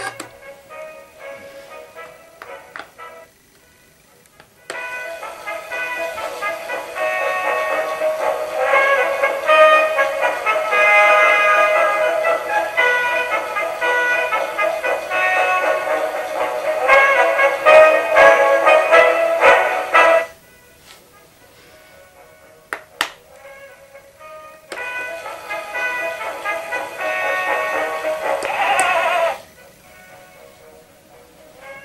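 Electronic alarm melody from a Wallace & Gromit moving alarm clock (model WG14), played in two stretches with a pause between them. The first stretch is the longer, and a single sharp click falls in the pause.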